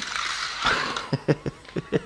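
A man laughing in short, rhythmic bursts, about five a second, starting about a second in. Before that comes the faint whir of the small electric propellers of a toy hovercraft drone.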